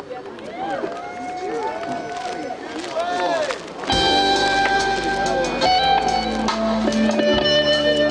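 Overlapping rising-and-falling whoops for the first few seconds. About four seconds in, a live band comes in with electric guitar and bass and plays on steadily at a louder level.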